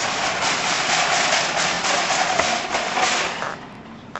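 Wire shopping cart rolling fast along a hard hallway floor, its casters and metal basket rattling steadily, dying away shortly before the end.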